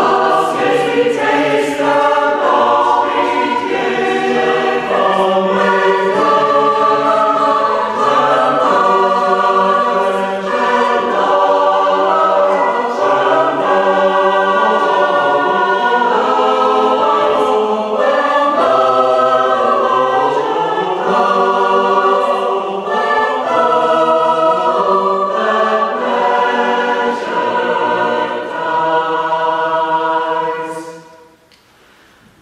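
Mixed choir of men's and women's voices singing a West Gallery part-song in harmony, with a cello accompanying, in long held chords that move from note to note.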